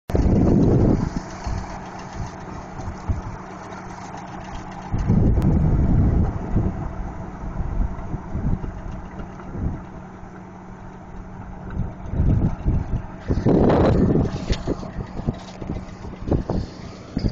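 Tractor-mounted hydraulic rotary tiller tilling soil and shredding weeds, over the steady hum of the tractor engine and hydraulics. Several louder rushes of noise come and go, near the start, about five seconds in, and again near the end.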